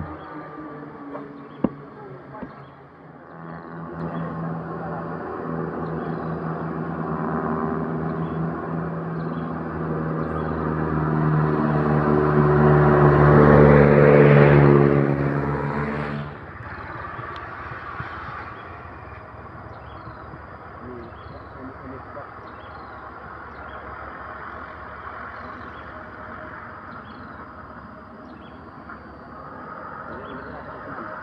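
Diesel truck engine labouring up a hill, its steady drone growing louder as it approaches and then cut off abruptly about halfway through; quieter traffic and road noise follow.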